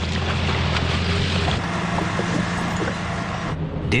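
A tracked tank's engine running steadily: a low drone under a broad hiss. The hiss drops away about three and a half seconds in, leaving the low drone.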